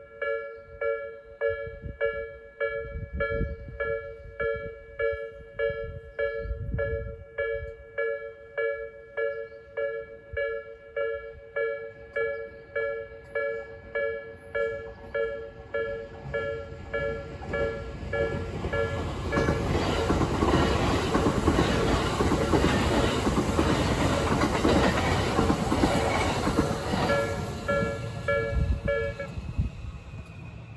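Japanese level crossing's electronic warning bell, the slow Nikko-type tone, dinging steadily about three times every two seconds. From about halfway in, a train passes with a rising rush and rhythmic clatter of wheels over the rail joints, drowning the bell. The bell stops shortly before the end as the barriers start to lift.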